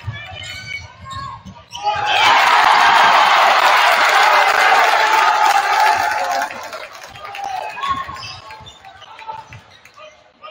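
Gym crowd cheering a basket: a loud burst about two seconds in that lasts some four seconds, then dies down to crowd voices. A basketball is being dribbled on the hardwood court.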